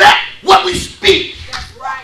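A loud, shouted voice in short emphatic bursts, about two a second, its words not made out.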